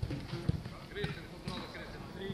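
Footballs being kicked on a grass training pitch: a few dull thuds about half a second apart, the first the loudest, among distant players' voices.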